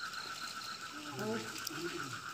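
Frogs calling in chorus: a steady, fast-pulsing trill.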